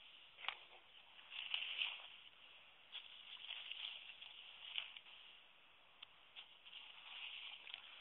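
Faint running creek water, swelling and fading, with a few light clicks.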